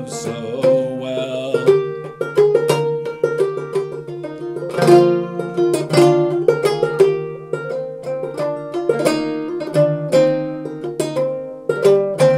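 Goldtone open-back banjo with a natural John Balch head, Dobson tone ring and nylgut strings, played clawhammer in a lilting 6/8: an instrumental passage of quick plucked notes and strums after the sung verse.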